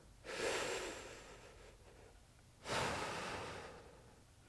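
A man taking two long, audible breaths, the second starting near the three-second mark, while holding a core and hip-flexor exercise.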